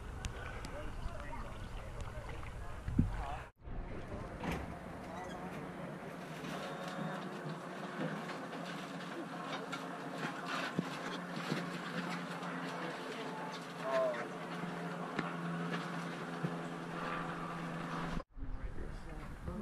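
Splashing water at a camera held at the surface, then, after a cut, indistinct voices of people on a boat over a steady low hum.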